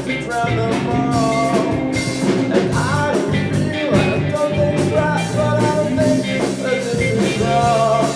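A live rock band playing: electric guitar, bass guitar and drum kit, with a lead vocalist singing over them.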